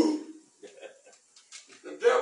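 A man's loud voice cuts off at the start, then a short pause broken only by a few brief, faint voice sounds, before loud speaking starts again at the very end.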